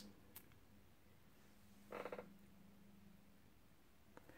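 Near silence: room tone with a faint steady hum, two faint clicks near the start, and about halfway a short, soft croaky sound.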